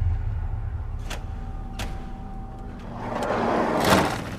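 A steady low rumble with two sharp clicks, then a van's sliding door rolling open, growing louder to a clack near the end.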